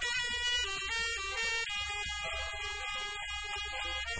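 Acoustic jazz quartet recording: a tenor saxophone plays a melody of held notes over a piano, bass and drums accompaniment.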